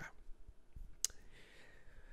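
A single sharp click about a second in, during a quiet pause in a small room, followed by a faint hiss.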